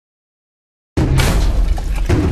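Silence, then about a second in a sudden loud crash of glass shattering, with a deep rumble underneath that carries on.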